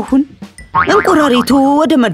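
Cartoon soundtrack: a character's voice over background music, with a springy cartoon boing sound effect held for about a second near the middle.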